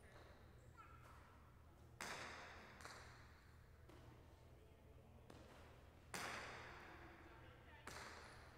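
Jai alai pelota striking the court walls in a rally: two loud sharp cracks about four seconds apart, each with a long echo in the hall, and fainter knocks between them.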